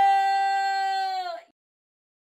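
A woman's long cheering shout of triumph, held at one high pitch, dipping slightly at the end and cut off abruptly about one and a half seconds in.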